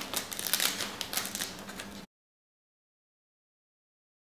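Nylon backpack fabric rustling with rapid ticking as the REI Ruckpack 40's stow-away strap cover is zipped around the pack. It stops abruptly about two seconds in, giving way to dead silence.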